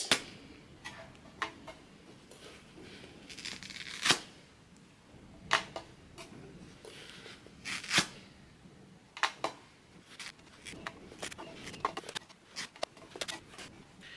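Paper face towels being torn off a perforated roll and handled along with plastic wrapping and a clear acrylic box: a string of sharp clicks, taps and short rips and crinkles, the loudest about four and eight seconds in.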